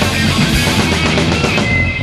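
Live rock band playing an instrumental passage: distorted electric guitars, bass and drum kit at full volume. A single high note is held near the end.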